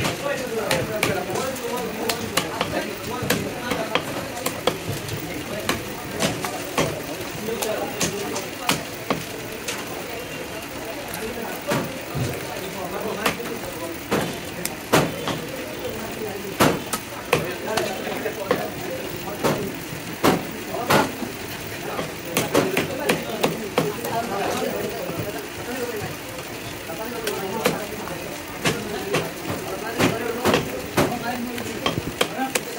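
Large knife chopping and cutting through a rohu fish on a wooden log chopping block: sharp, irregular knocks of the blade into the wood, over indistinct voices.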